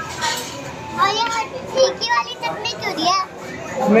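A young girl's high-pitched voice in several short phrases whose pitch rises and falls.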